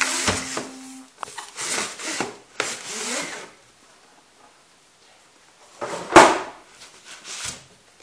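Cardboard box being opened by hand: the inner box slides out of its outer sleeve with cardboard rubbing and scraping for the first few seconds. After a short pause comes a sharp knock about six seconds in, the loudest sound, then lighter handling noises.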